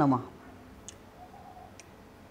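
A man's voice trails off right at the start. Then two light computer-mouse clicks come about a second apart over a quiet room background.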